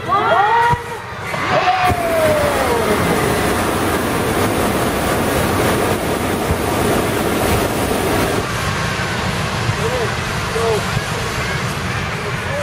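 Hot air balloon propane burners firing in a long steady blast of noise from about two seconds in, easing off about eight seconds in. People's voices can be heard around it, most clearly at the start and again near the end.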